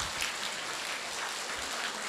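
A seated audience of nuns laughing together and clapping, a steady mix of women's laughter and applause.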